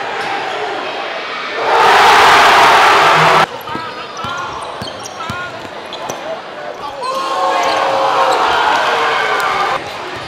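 Basketball game sound in a gym: a crowd cheering loudly for about two seconds, cut off abruptly, then a ball bouncing on the hardwood under shouting voices, with the crowd noise swelling again near the end and stopping suddenly.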